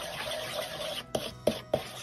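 Wooden spoon scraping and stirring softened butter and sugar in a plastic mixing bowl: a gritty rubbing for about a second, then a few sharp clicks of the spoon against the bowl.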